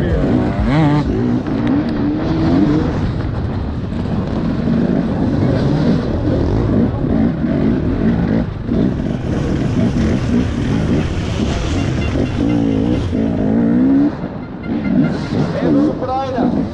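Enduro motorcycle engine revving hard and easing off again and again as the bike is ridden through a muddy, rocky race course, loud throughout, with a brief drop near the end.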